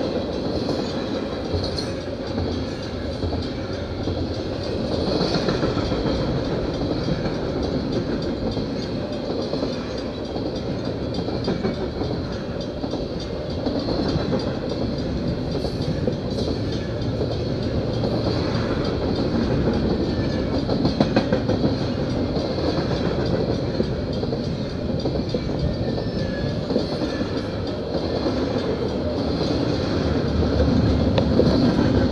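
Double-stack intermodal container train rolling past at close range: a steady rumble of freight car wheels on the rails, with scattered clanks and clacks.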